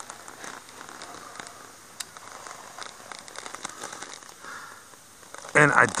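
Faint crackling and rustling of clay soil clods and grass being dug out and handled, with one sharper click about two seconds in.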